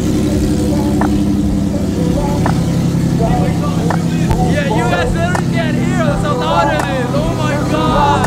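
Nissan 370Z NISMO's 3.7-litre V6 idling with a low, steady drone, with voices over it.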